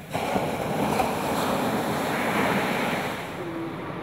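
Surf at the water's edge: a small wave breaking and washing up the beach, a steady rushing hiss that fades after about three seconds.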